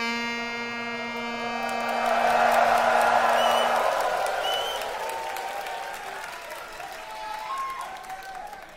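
A tenor saxophone holds one long final note for about four seconds while audience applause and cheering swell up over it, with two short whistles from the crowd; the applause then slowly dies down.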